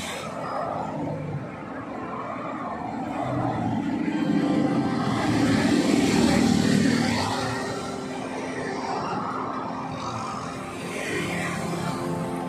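Road traffic passing close, swelling to its loudest in the middle as vehicles go by, with background music running under it.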